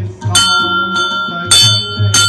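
Hanging temple bell rung by hand, struck twice about a second apart, each strike ringing on with steady tones.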